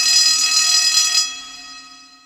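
Logo intro sound effect: a bright, steady ringing chord with many high overtones, the sustained tail after a boom. It holds until a little past halfway, then fades out.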